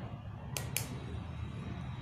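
Two short, sharp clicks about half a second in, from hands handling the power bank and its wiring, over a low steady hum.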